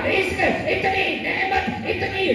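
A man's voice giving a religious address into a microphone, amplified over a PA system.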